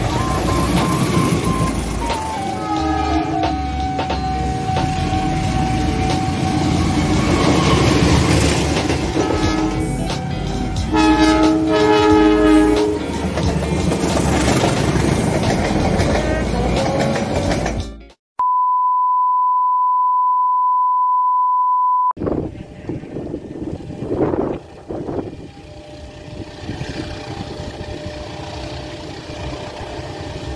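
Diesel-hauled passenger train passing close, with wheel and engine noise throughout. Its multi-note horn sounds twice, briefly at about three seconds and longer at about eleven to thirteen seconds. The train noise then cuts off suddenly, giving way to a steady high beep-like tone for about four seconds. Quieter, distant train sound follows.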